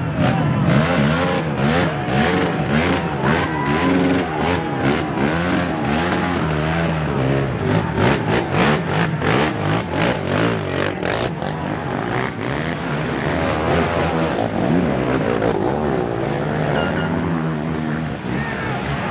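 Racing ATV engine revving up and down over and over, wheels spinning in loose dirt as the quad struggles up a steep hill, under a crowd shouting close around it.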